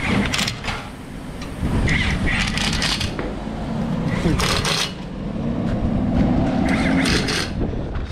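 Tyre-shop work noise during a wheel change: four short bursts of loud noise about two seconds apart over a low background, with a faint steady hum near the end.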